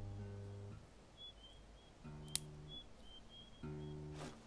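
Acoustic guitar chords played slowly: one chord rings out at the start, a short one follows about two seconds in, and another starts near the end, with pauses between them. A single sharp click falls between the second and third chords.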